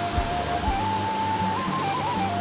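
Background music: a simple melody of held notes stepping up and down over sustained low accompanying notes.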